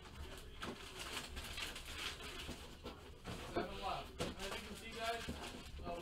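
Faint, low speech with a few soft clicks and light rustles of handling.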